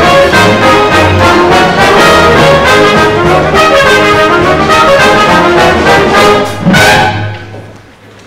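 Theatre pit orchestra, led by its brass, playing the up-tempo finish of a show-tune dance number with a steady beat. It ends on a loud final hit about seven seconds in that dies away.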